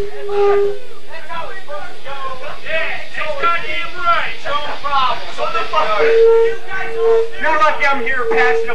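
A steady high feedback tone from the band's amplified gear rings for the first second and comes back about six seconds in, with people talking over and between it.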